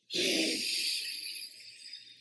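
A man blowing one long, hard breath, a rushing hiss that starts suddenly and fades away over about two seconds.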